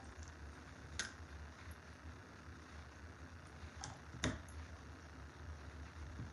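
A few light clicks and taps as ribbon and small craft pieces are handled on a table, the sharpest about four seconds in, over a low steady hum.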